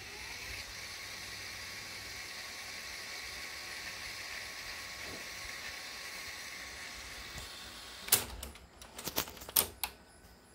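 Sony SLV-XR9 VHS video cassette recorder's tape transport whirring steadily while rewinding. About eight seconds in, a quick series of sharp mechanical clicks and clunks follows as the mechanism stops and changes mode.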